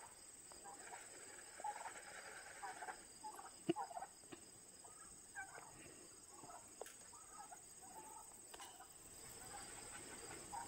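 Domestic white turkeys making faint, short calls on and off. A single sharp click comes a little under four seconds in.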